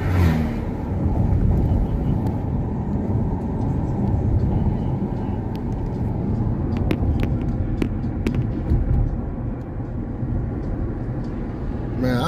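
Steady road and engine noise inside a moving car's cabin, a low rumble of tyres and engine on a winding hill road. A few short clicks come about seven to nine seconds in.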